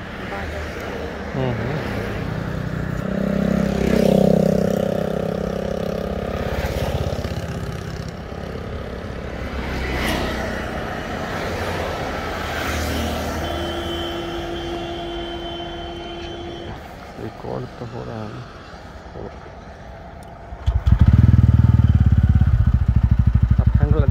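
Road traffic passing close by, cars going past with a steady tone at times. About 21 seconds in, a loud motorcycle engine running close by takes over, with a fast, even beat.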